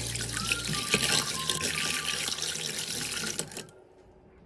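Hand-cranked rotary egg beater whisking milk, egg and melted butter in a plastic bowl: a steady liquid churning and splashing that stops about three and a half seconds in.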